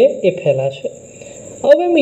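A person lecturing, their voice pausing briefly in the middle, with a faint steady high-pitched trill running underneath.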